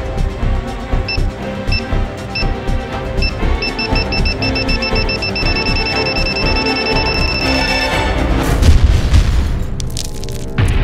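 Bomb-timer beep sound effect over dramatic film music: short high beeps, a few at first and then faster and faster from about three and a half seconds in until they run together, followed near the end by a loud explosion boom.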